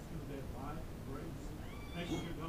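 Indistinct voices in the room, with a short, high-pitched cry near the end that rises in pitch and then holds.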